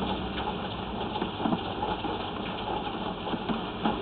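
Drain inspection camera's push rod being fed along the pipe, a crackly rustle with scattered light ticks over a steady low hum.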